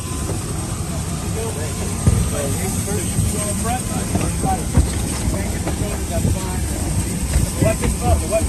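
UH-60 Black Hawk helicopter running on the ground: a steady low rotor and engine noise with a thin high turbine whine. Gear knocks against the cabin as soldiers climb aboard, with a sharp knock about two seconds in and another near five seconds.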